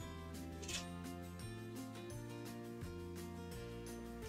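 Quiet background music: held chords over a slowly changing bass line.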